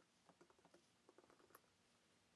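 Faint computer keyboard typing: a run of quick, soft keystrokes.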